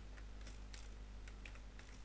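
Computer keyboard typing: a quick, uneven run of about a dozen keystrokes as a short word is typed.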